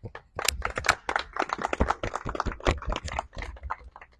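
Applause: a group of people clapping by hand, a dense irregular patter of claps that thins out near the end.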